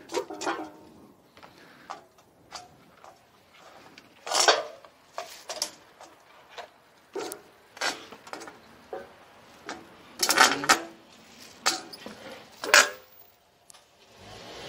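Irregular knocks and clinks from a discarded metal floor lamp being handled, its pole and cracked base bumping on concrete pavement. The knocks are scattered, with a quick cluster of them about ten seconds in.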